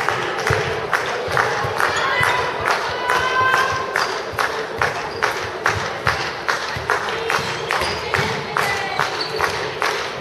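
Handball being played on an indoor court: many quick knocks of the ball and feet on the hall floor, with short squeaks of shoes, over voices and crowd noise in the hall.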